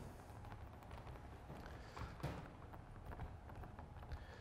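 A few faint soft taps of fingers dabbing thick acrylic paint onto a canvas, the clearest about halfway through, over quiet room tone.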